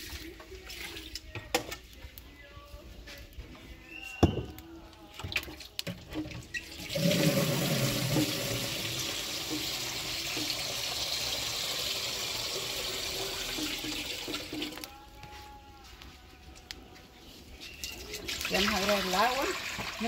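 Water running steadily for about seven and a half seconds, starting about seven seconds in. Faint voices come before and after it, and there is a single sharp knock about four seconds in.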